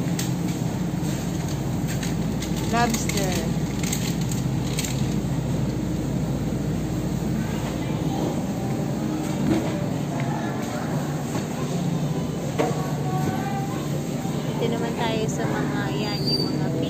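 Busy supermarket ambience: a steady low hum with shoppers' voices in the background, including a short high-pitched voice about three seconds in.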